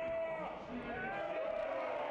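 Faint, distant voices of players and spectators calling out at a small football ground, heard through the match camera's own microphone.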